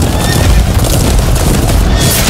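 Film battle sound effects: a horse whinnying over galloping hooves and a heavy low rumble, loud and dense throughout.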